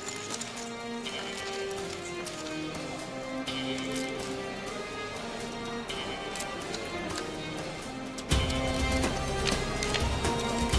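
Background music of a drama score: held notes moving in steps over a light ticking rhythm. About eight seconds in, a louder, deeper beat comes in.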